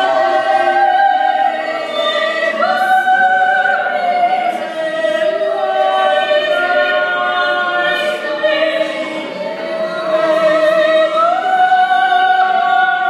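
Voices singing long held notes, choral in character, gliding up to a new held pitch about two and a half seconds in and again near the end.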